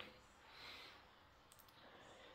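Near silence: room tone, with a faint brief hiss a little under a second in and a couple of soft clicks about one and a half seconds in.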